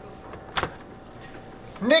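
An apartment door's latch or lock clicking sharply about halfway through as the door is opened from inside, with a softer click just after; a man's loud greeting starts right at the end.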